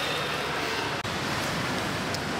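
Steady rushing background noise with no distinct events, briefly cut off about a second in where the scene changes; the second half is outdoor street ambience.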